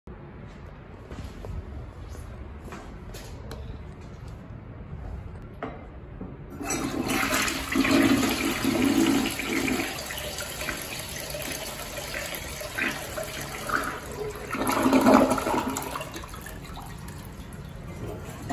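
A Briggs Altima elongated tank toilet flushing. After a few quiet seconds, water rushes in suddenly about a third of the way in and swirls down the bowl, surges again briefly near the end, then settles to a lower, steadier flow of water.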